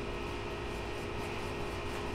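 Steady background hum and even hiss, with no separate knocks or scrapes standing out.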